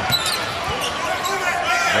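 A basketball being dribbled on a hardwood arena court, over the steady noise of the crowd.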